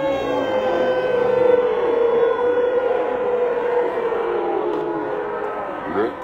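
A person's long, drawn-out yell held on one pitch for about four seconds, trailing off about five seconds in.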